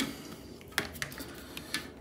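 A few faint clicks and taps from handling tools at a workbench, as a soldering iron is picked up, over quiet room tone.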